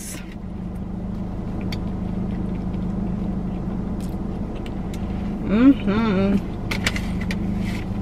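Steady low hum inside a car, with faint scattered mouth clicks from chewing. A short appreciative "mm" hum comes about five and a half seconds in.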